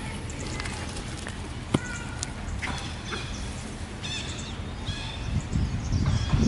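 Outdoor park ambience: a steady low rumble with faint, short bird calls repeated in small groups in the second half, and a single sharp click near the middle.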